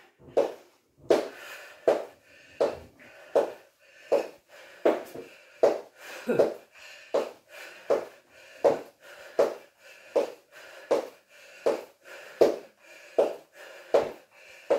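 A woman breathing hard from exertion, with a sharp breath out about every three-quarters of a second in a steady rhythm that keeps time with a repeated exercise move.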